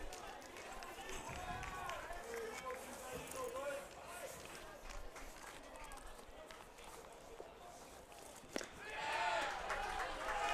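Ballpark crowd: scattered fans shouting and calling out from the stands. A single sharp pop about eight and a half seconds in is the pitch smacking into the catcher's mitt, followed by louder shouting from fans unhappy with the called strike.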